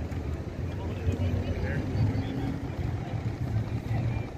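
Busy city street ambience: a steady low rumble of traffic with scattered voices of passers-by.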